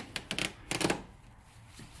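A rapid run of clicks and scrapes within the first second as a rubber weatherstrip is pulled off the plastic cowl panel below a car's windshield.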